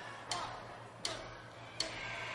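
A drummer's count-in: sharp clicks from drumsticks, evenly spaced about three-quarters of a second apart, three of them, setting the tempo before the band comes in.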